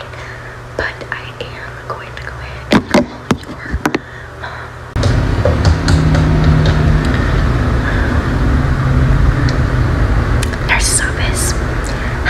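Soft whispering with a few sharp clicks, then about five seconds in a sudden, steady louder background noise with a low hum comes in.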